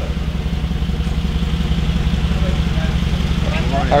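SUV engine, a Mercedes-Benz G-Class by its look, idling steadily close by, a low even pulsing; a man calls a greeting right at the end.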